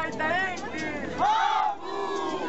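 Several high voices crying out together in long wails that rise and fall in pitch, overlapping one another, the loudest cry coming about a second and a half in.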